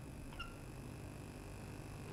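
Faint steady hum and hiss of an old TV recording's soundtrack, with a brief faint blip about half a second in.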